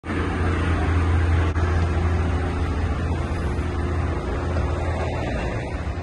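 A large SUV's engine idling close by, a steady low hum with traffic noise around it. There is one brief knock about one and a half seconds in.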